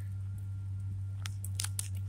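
A few light clicks and crackles from handling among dry grass stems, spaced irregularly over a steady low hum.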